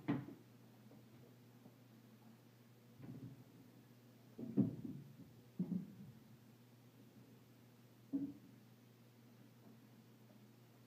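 Feet stepping onto the rungs of an Xtend & Climb 780P aluminium telescoping ladder as a man climbs it: five short, dull knocks spread over several seconds, the loudest about halfway through, over a low steady hum.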